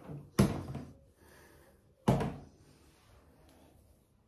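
Two sharp thumps, about a second and a half apart, each dying away quickly.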